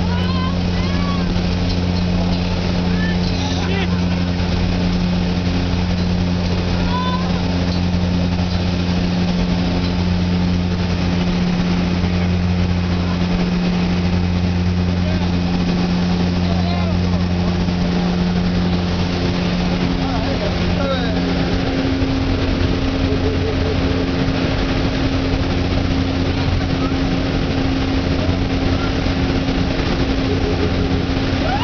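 Steady drone of a skydiving jump plane's engines and propellers heard inside the cabin, a loud, even hum made of several fixed tones. About two-thirds of the way in the engine note changes: one tone drops away and a higher one grows stronger.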